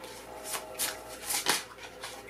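A deck of oracle cards being shuffled by hand: a string of short card slaps and swishes, about five in two seconds.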